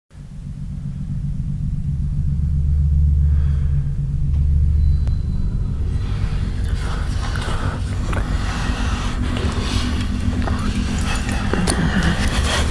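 Deep, steady rumbling drone of a horror-film score swelling in, joined about halfway by a scratchy, crackling texture that builds to the end.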